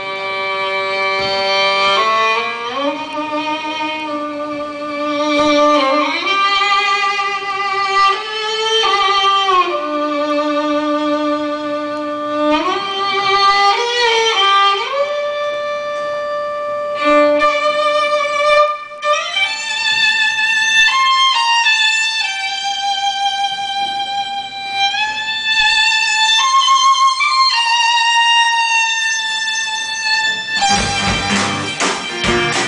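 Violin playing a slow melody of long held notes with vibrato, sliding up and down between pitches, with one brief break about two-thirds of the way through.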